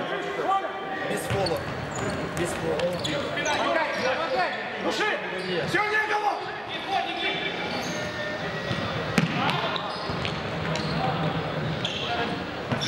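Futsal play on a wooden sports-hall floor: sneakers squeaking in short sharp chirps, the ball being kicked and bouncing, and players calling out, all echoing in the large hall.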